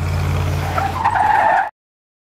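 Car sound effect: a steady engine hum with a tyre screech joining just under a second in, all cutting off suddenly shortly before the end.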